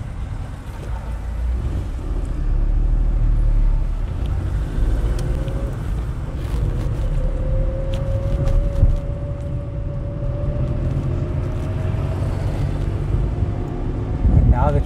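A car driving along a city street, heard from inside the cabin: steady low road and engine rumble, with the engine tone climbing slowly through the middle as the car picks up speed.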